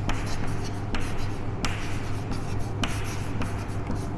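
Chalk writing on a chalkboard: a quick run of short scratches and taps as a word is written out, over a steady low hum.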